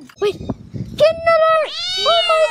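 Rumbling handling noise with a few clicks, then about a second in a high, drawn-out vocal cry that bends up and falls away, with a second cry starting near the end.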